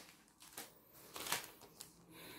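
Faint crinkling of clear plastic packaging on a pack of circular knitting needles being handled, a few soft rustles with the most noticeable one a little past a second in.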